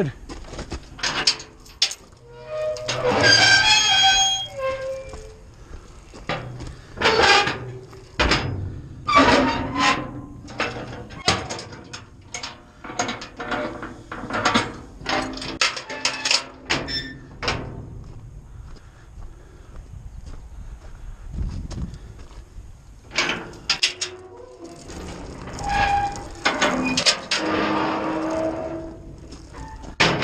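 Steel rear doors of a hook-lift bin being swung shut and latched: repeated metal clanks and knocks, with squealing hinges or metal-on-metal scraping several times.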